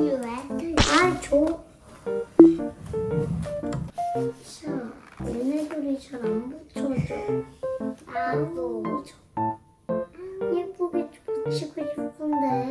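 Light, cute background music with short piano-like notes, with young girls' voices talking over it.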